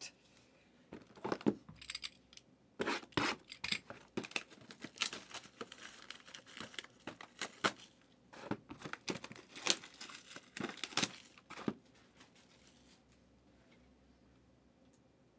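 Packaging on a sealed trading-card box being torn and crinkled by hand, in irregular rips and crackles that stop near the end.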